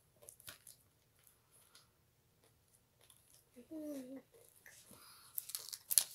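A child chewing a bar of white chocolate with Smarties in it, with faint scattered crunching clicks. About two-thirds of the way through there is a short hummed "mm", and near the end a louder crackle.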